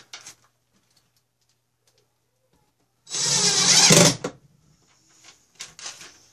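Cordless drill running a screw into a steel shelf bracket for about a second, around the middle, with a few faint clicks near the end.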